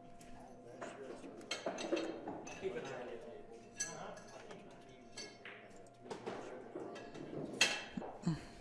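Several scattered sharp clicks and clinks of pool balls and the racking triangle as the rack is lifted off a freshly racked set of balls and put away, the loudest clink near the end. Indistinct voices murmur underneath.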